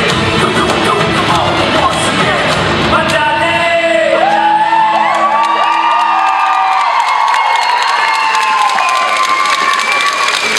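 Loud dance music with a heavy beat that drops out about three seconds in, leaving a held chord that fades. Over it an audience cheers and whoops.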